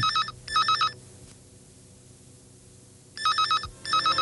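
Telephone ringing in a double-ring pattern. Two short warbling rings come at the start, then a pause of about two seconds, then two more rings near the end.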